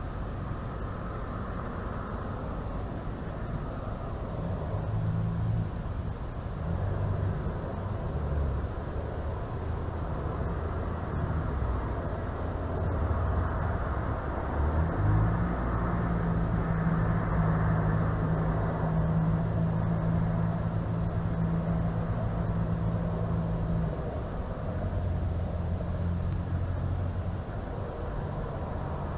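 Low engine drone over a steady hiss, swelling about halfway through, holding for several seconds, then easing off near the end.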